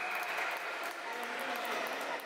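Steady reverberant din of a children's futsal game in a large indoor sports hall: blurred voices and play noise, with a few faint short clicks.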